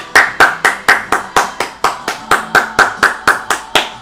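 One person clapping his hands in a steady, even rhythm, about four claps a second, loud and close. The claps stop just before the end.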